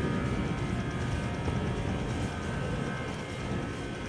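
Steady background rumble with a faint steady hum in it, easing off slightly over the few seconds.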